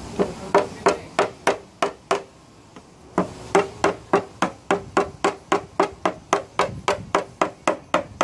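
Paintless dent repair tap-down: a hammer striking a tap-down punch held on a 2014 Subaru XV Crosstrek's decklid, about three taps a second, each with a short ring. The taps pause for about a second about two seconds in, then run on evenly. They are knocking down a ridge through the middle of the dent.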